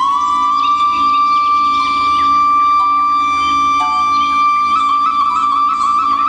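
Indian classical dance music: a flute holds one long note and steps up to a higher held note near the end, over a steady drone with shorter accompanying notes beneath.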